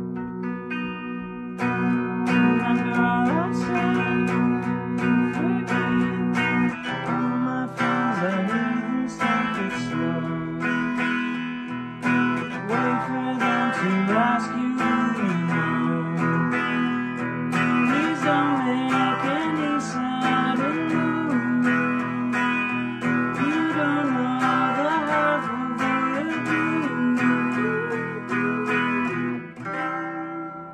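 Guitar strummed through a chord progression with a man singing the melody over it; the playing fades out near the end.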